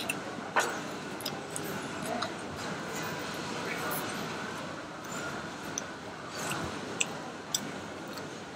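Background hubbub of a busy mall food court: a steady mix of distant voices and clatter, with a few sharp clicks, one early and two close together near the end.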